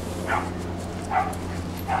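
A dog giving a couple of short yipping barks, about a second apart.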